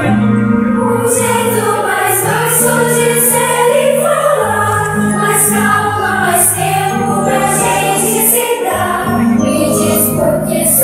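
A choir singing a Christmas song with instrumental accompaniment: sustained low notes under the voices, with bright high accents recurring about once a second.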